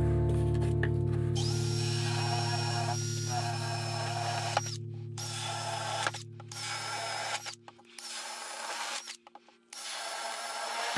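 Cordless drill boring holes through an acrylic plate, run in several bursts of one to three seconds with short stops between, the motor whining and briefly spinning down at each stop. A held music chord fades out underneath.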